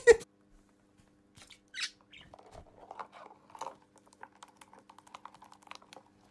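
Light, irregular tapping and scratching of a small clear plastic container as it slides and shifts on a wooden tabletop, pushed about by a small bird inside it.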